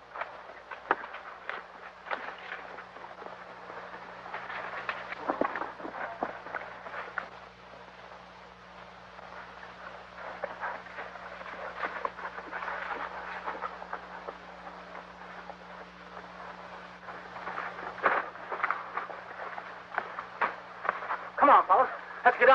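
Horses' hoofbeats, irregular knocks and clatter, over the steady hum and hiss of an old film soundtrack.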